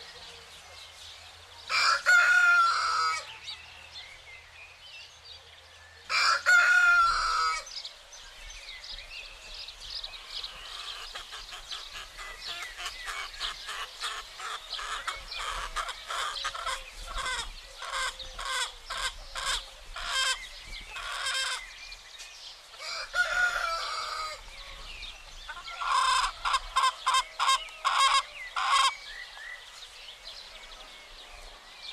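A rooster crowing three times: about two seconds in, about six seconds in, and again past the middle. Between the crows, chickens cluck in quick runs of short notes, busiest in the middle and again near the end.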